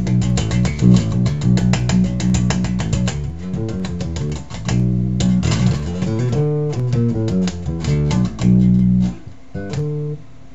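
1987 B.C. Rich Ironbird electric bass played with the fingers through a guitar amplifier: fast, evenly repeated notes for the first three seconds or so, then a slower line of changing notes that stops about nine seconds in.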